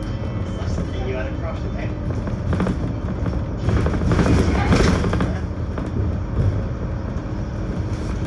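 Interior running noise of a VDL DB300 double-decker bus under way: a steady diesel engine drone with road rumble, growing louder and rougher for a second or so about halfway through.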